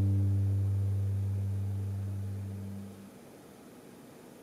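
Cello and double bass holding a low bowed note that fades and stops about three seconds in, leaving only the quiet of the hall.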